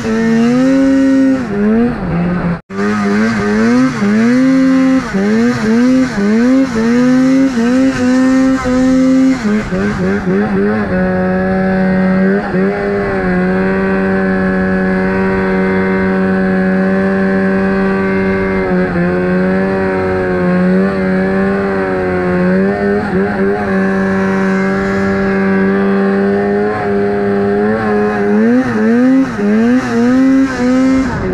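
Mountain snowmobile engine heard from the rider's seat. It revs up and down in quick, repeated throttle blips for the first ten seconds, then holds a steady high pitch for most of the run. Near the end the revs rise and fall again. A very short break in the sound about three seconds in.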